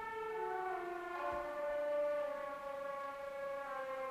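Flute and cello playing slow, held notes that step downward in pitch, each note ringing on into the next in a reverberant concert hall.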